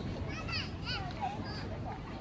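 Background voices of passers-by, with children's high-pitched calls standing out about half a second and a second in, over a steady low rumbling hum of outdoor noise.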